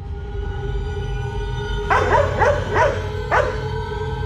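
Background music with held tones over a steady low drone; about two seconds in, a dog barks four times in quick succession over it.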